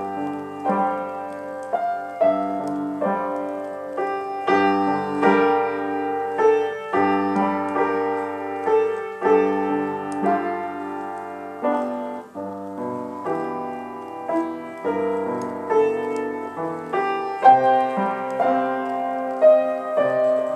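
Solo piano improvisation: held chords with a melody line above and a low bass note sustained beneath, the harmony changing every second or two.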